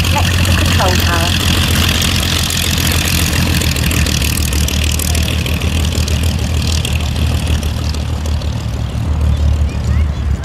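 de Havilland Dragon Rapide biplane's twin six-cylinder inline engines running at low power as the aircraft taxies, a steady drone.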